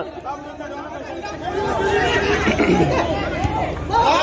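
Spectators along the touchline talking and calling out over one another, a steady babble of many voices.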